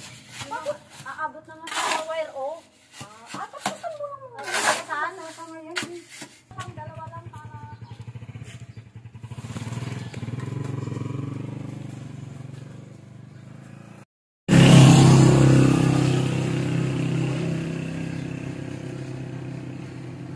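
A motor vehicle engine running steadily as it passes, swelling and fading. After a sudden cut it comes back much louder and slowly dies away.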